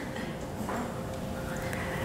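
Quiet room tone with a steady low hum and faint murmuring voices.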